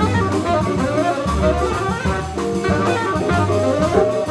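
Live jazz combo: a tenor saxophone plays a flowing melodic line over walking upright bass, drum kit, piano and electric guitar.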